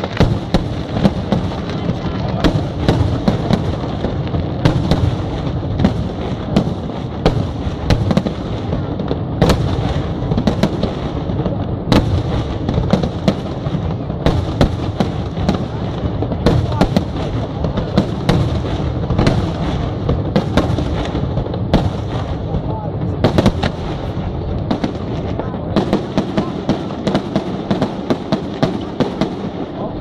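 Aerial fireworks display in full barrage: a dense, continuous rumble of shell bursts and crackling stars, with many sharp reports going off through it.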